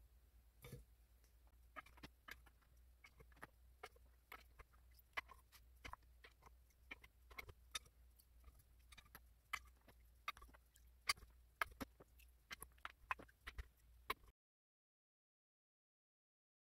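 Faint, irregular metal clicks of BMW M52TU/M54 hydraulic valve lifters being handled one by one: taken from their oil bath and dropped into the bores of a camshaft tray. The clicks stop suddenly to dead silence about two seconds before the end.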